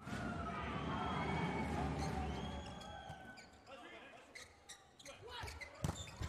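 Indoor volleyball court and crowd sound: a mix of crowd noise and court noise that fades after a few seconds, then a few short knocks and one sharp ball strike near the end.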